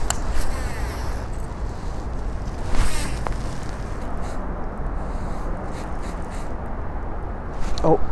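A baitcasting rod and reel being handled and cast, with the sharpest noise about three seconds in, over a steady low rumble of wind on the microphone.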